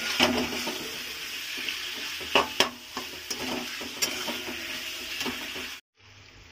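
Chunks of mutton fat frying in oil and spice paste in a metal kadai, sizzling steadily while a spatula stirs them, with several sharp scrapes and clacks of the spatula against the pan. The sound cuts off suddenly near the end.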